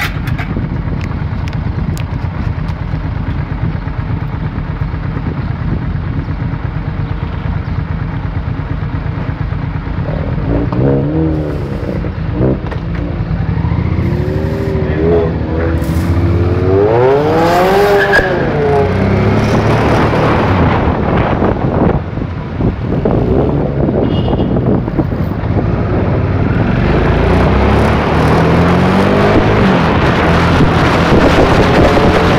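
Car engine running steadily at low revs, then revving up and down repeatedly as the car moves off and accelerates. Its pitch climbs highest a little past the middle and rises again near the end.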